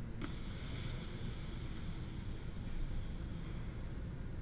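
Steady background room tone: a low rumble and a faint hiss from the microphone, with one faint click just after the start.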